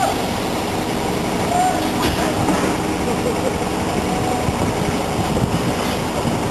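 Diesel engine of a mobile crane running steadily while it holds a heavy load on the hook, with a single clank about two seconds in and voices calling over it.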